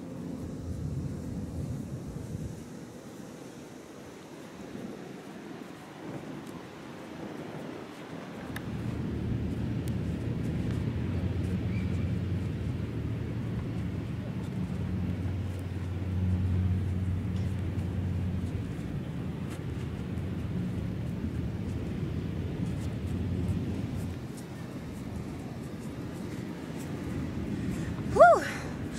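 A low, steady engine drone that comes in about eight seconds in, is loudest midway and fades away before the end.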